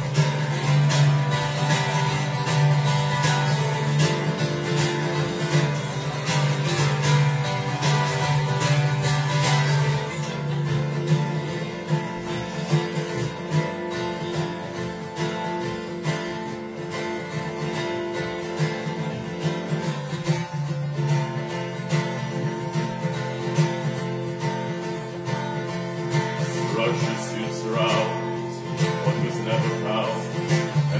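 Acoustic guitar playing a song, strummed loudly for about the first ten seconds, then played more softly.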